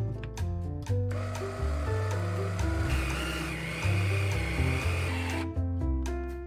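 Electric food chopper's motor runs for about four and a half seconds, starting about a second in and cutting off near the end, chopping butter, egg yolks and flour into a crumbly dough; a higher whine joins about halfway through. Background music plays throughout.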